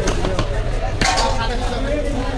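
A large knife chopping down through a thick, scaled section of fish onto a wooden block: two sharp strokes about a second apart, over voices of market chatter.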